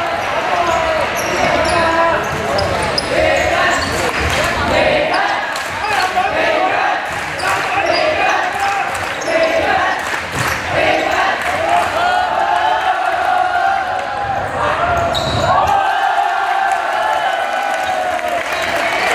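A basketball dribbled and bouncing on a hardwood gym floor during live play, with many voices calling and shouting, echoing in a large sports hall.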